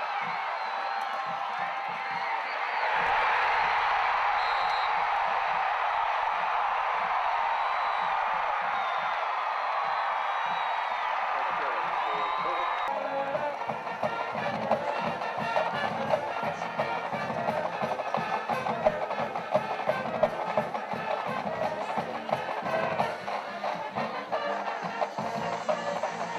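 Crowd cheering and shouting in a stadium. About halfway through it cuts suddenly to music with a quick, steady beat of drums and percussion.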